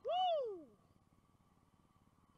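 A man's excited whoop, a single 'woo' that rises and then falls in pitch over about half a second at the start, celebrating a big bass just landed.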